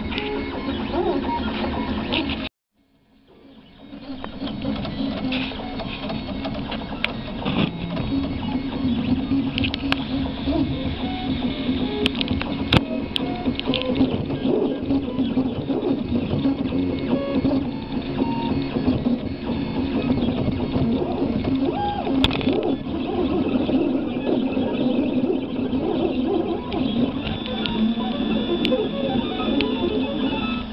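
MakerBot 3D printer running a print, its motors buzzing steadily in shifting tones as the extruder head moves over the part. The sound drops out for about a second near the start, then carries on.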